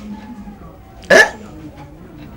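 A distressed man gives one short, sharp sob, a catch of breath about a second in, against quiet room tone.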